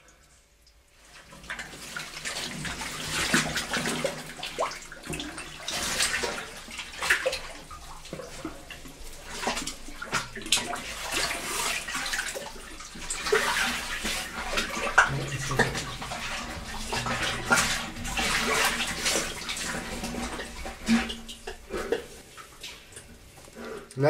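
Muddy water in a flooded cave passage sloshing and splashing irregularly, stirred by a caver diving under it; it starts about a second in.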